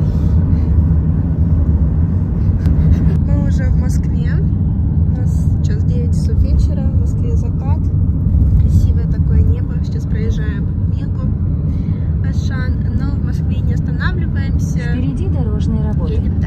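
Loud, steady low rumble of a car driving at highway speed, heard from inside the car, with indistinct voices faintly over it.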